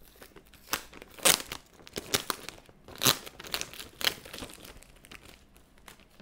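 Thin plastic delivery bag rustling and crinkling as it is handled, in irregular bursts that are loudest about a second in and again about three seconds in.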